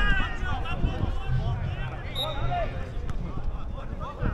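Players' voices shouting across an outdoor football pitch during play, over a steady low rumble.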